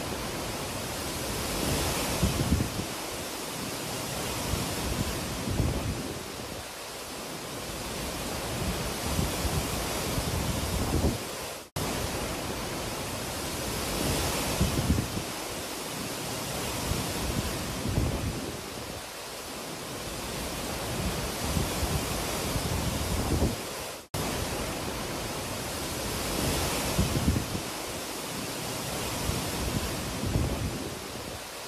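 Hurricane-force wind gusting through trees and palm fronds with wind-driven rain, buffeting the phone's microphone. The noise surges and eases every few seconds with sharp buffets, and it cuts out for an instant twice.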